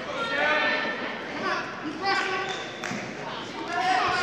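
Raised voices shouting across a large gym hall, with a single sharp knock a little before three seconds in.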